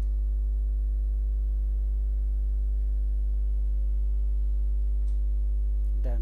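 Steady electrical mains hum: a low buzz with a stack of steady overtones, and a faint high-pitched whine above it.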